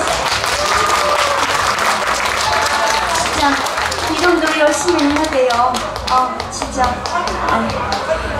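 Quick irregular taps or claps with people's voices talking over them; the voices grow clearer in the second half.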